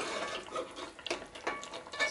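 A metal spoon sliding and scooping through thick curry sauce in a large aluminium pot, the liquid sloshing, with a few light clicks of spoon against pot.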